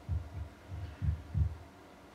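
A handful of soft, low thumps, about five in under two seconds, picked up through a handheld microphone as the man holding it walks. It is handling and footfall noise, not speech.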